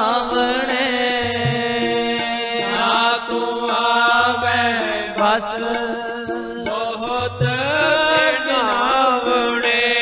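Sikh kirtan: a Gurbani hymn sung in long, wavering held notes over sustained harmonium chords, with low beats recurring every second or two.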